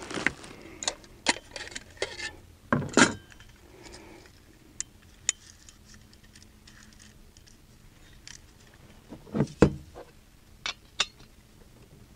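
Small clicks and knocks of a backpacking canister stove being handled and fitted onto a gas canister, with two louder knocks about three seconds in and shortly before ten seconds.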